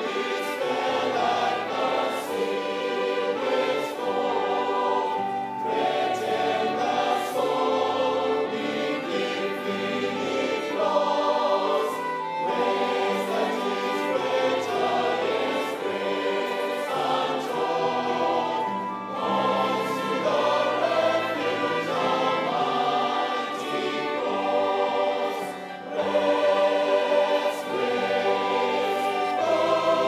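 Large mixed mass choir singing a hymn in harmony, the sound growing louder near the end.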